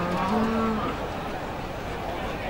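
A Limousin cow or calf moos once. The call rises a little in pitch and ends about a second in.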